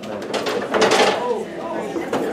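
Indistinct chatter of people talking in a room, with a few light clicks or knocks about half a second to a second in.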